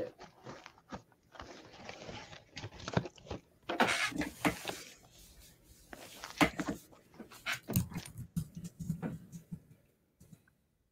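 Cardboard tent box being handled and turned over on a tabletop: irregular rubbing, scraping and light knocks of cardboard, with the loudest scraping rustle about four seconds in.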